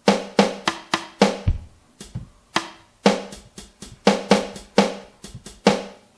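Boss Dr. Rhythm DR-3 drum machine playing single drum sounds, mostly snare, as its velocity-sensitive pads are tapped by hand. There are about twenty hits at an uneven pace and varying loudness, with one deeper, kick-like hit about a second and a half in.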